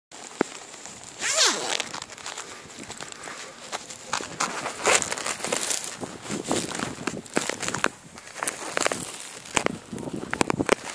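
Footsteps through mown grass with irregular rustling and crackling scuffs, and a brief falling swish about a second in.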